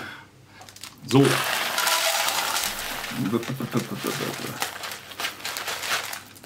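Dry cereal flakes pouring from a packet into a plastic bowl on a kitchen scale, a continuous dry rustling and pattering with the packet crinkling, starting about a second in.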